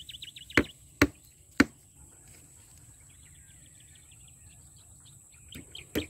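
Three sharp knocks about half a second apart in the first two seconds, then a faint, rapid, high chirping trill.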